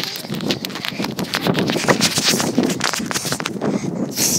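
Hurried footsteps, with the handheld phone's microphone rubbing and knocking against a cotton hoodie, giving a dense, irregular run of scuffs and knocks.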